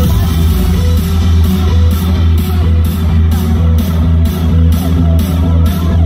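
Electronic dance music played loud over a festival main-stage sound system, with a heavy, steady bass under a rhythmic pulse of about two beats a second. This is the build-up before the drop.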